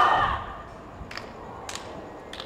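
Many voices calling out together fade out about half a second in, leaving quiet background noise with two faint clicks.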